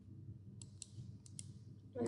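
Computer mouse button clicking, four short sharp clicks in two quick pairs, as points are placed along a contour in drawing software.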